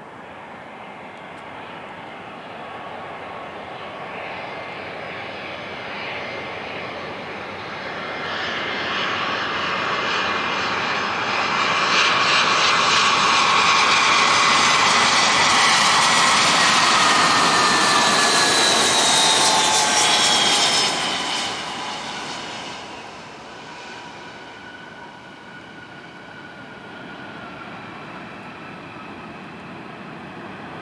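Airbus A320's twin jet engines on final approach to land, growing louder as the plane nears and passes close by. The roar is loudest about halfway through, and its engine whine slides down in pitch as it goes past, then drops away quickly.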